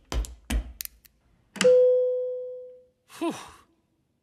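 Two heavy footsteps, then a single elevator bell chime that strikes sharply and fades out over about a second. A short sigh, "whew", comes near the end.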